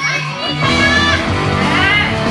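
Music with steady bass notes, with shouting voices over it, strongest in the first second.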